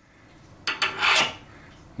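Metal scraping and rubbing as a pen-turning mandrel is pushed into the lathe's headstock spindle. There is one loud scrape of well under a second, a little after the start.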